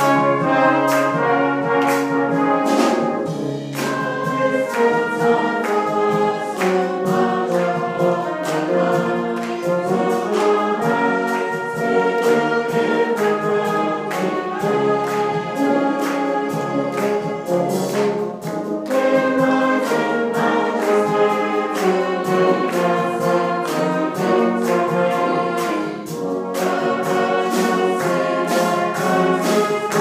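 Salvation Army brass band playing a bright, march-like hymn tune, with a congregation singing along.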